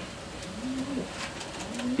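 Domestic racing pigeons cooing: low, rounded coos, one about halfway through and another starting near the end.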